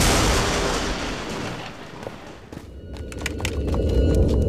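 A staged film explosion: a sudden loud boom that dies away over about two and a half seconds, followed by a scatter of short sharp cracks over a low rumble.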